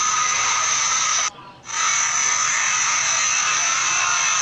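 Steady hiss-like background noise with a few faint steady tones. It cuts out briefly about a second and a half in, then resumes.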